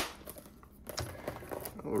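A sharp click at the start, then faint crinkling and handling of a cellophane-wrapped card box.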